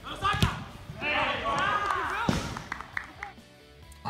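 Two sharp thuds, then about a second of raised voices, and another sharp thud.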